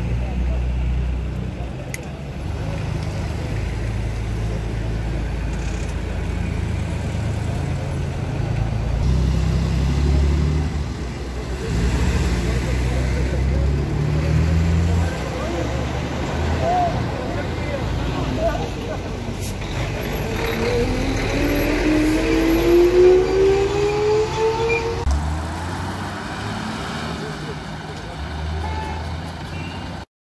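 Road traffic: cars and trucks running slowly past with a deep, steady engine rumble. About twenty seconds in, one vehicle's engine climbs in pitch as it speeds up, the loudest part, then drops back to the low rumble.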